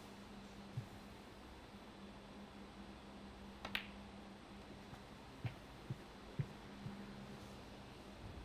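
Quiet snooker-hall room tone with a steady low hum. There is one sharp click about halfway through and a few soft low thuds in the second half, as the player moves round the table between shots.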